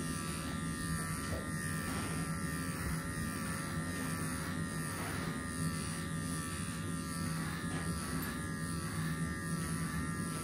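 Cordless electric horse clipper buzzing steadily as it trims long guard hairs from a horse's hind leg.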